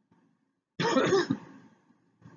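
A man clearing his throat once, about a second in, a short loud burst lasting about half a second.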